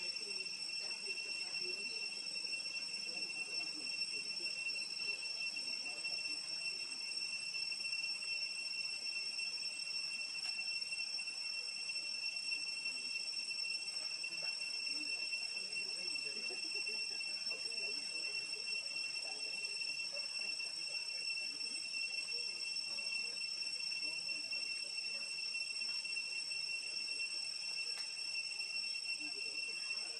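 A steady, unbroken high-pitched insect drone over a faint, irregular low background murmur.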